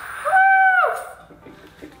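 Helium escaping from a disposable tank's nozzle through a bubble of slime, making one short, steady high squeal that slides down in pitch as it ends.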